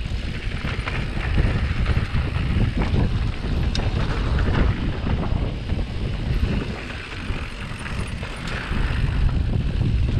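Wind buffeting a helmet camera's microphone while a mountain bike's tyres roll over a loose gravel trail, with scattered clicks and rattles from stones and the bike.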